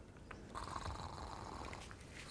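Faint snoring: a low, steady rumble from a sleeping puppet character.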